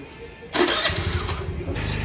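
Motor scooter's small petrol engine starting about half a second in, then running steadily at idle.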